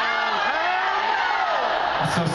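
Concert crowd cheering and whooping, many voices in overlapping rising-and-falling yells.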